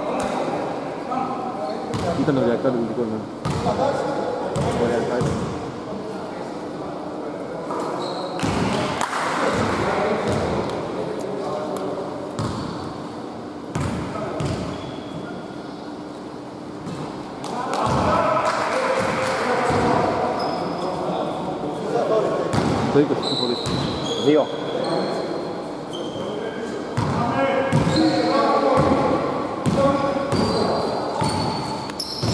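Basketball bouncing on a hardwood gym floor, with players' voices calling out and echoing in the hall. Short high squeaks come in the second half.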